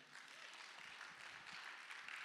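Faint applause from a church congregation, an even spread of clapping.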